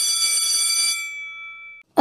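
The closing held note of a video's intro music: a bright, steady electronic tone with overtones. It fades out over the second half and stops just before the end.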